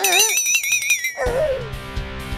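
Cartoon sound effect: a wavering, warbling high tone over rapid ticking for about a second, which then gives way to background music that enters with a low rumble.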